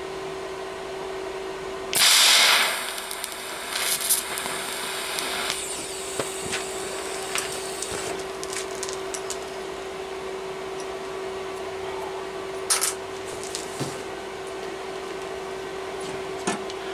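TIG welder arc striking a short tack weld on steel plate: a loud hissing buzz about two seconds in lasting under a second, then a fainter hiss fading over the next few seconds. A steady hum runs underneath, and a few light metallic clicks come near the end.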